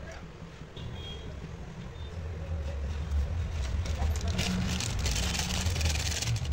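A steady low rumble. From about four seconds in it is joined by a louder crackling rustle as a plastic instant-noodle packet is handled and the dry noodles are tipped into the pot of water.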